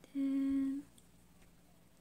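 A woman's short hummed "mmm", one steady, flat note held for just over half a second near the start, followed by quiet room tone.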